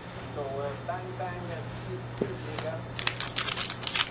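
Foil wrapper of a trading-card pack crinkling as it is handled, a dense run of crackles beginning about three seconds in.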